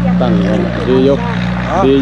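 A man talking in Thai, with a steady low engine hum underneath.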